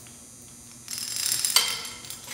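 Steel lifting chain rattling and clinking against itself and the engine as it is handled and hooked on, starting about a second in with a sharp clink near the end.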